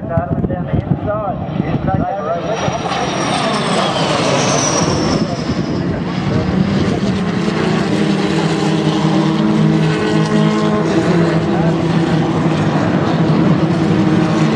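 Jet aircraft flying past overhead during a display: a loud rushing engine noise with a high whine that falls in pitch about four to six seconds in, then a steadier, lower drone as it banks away.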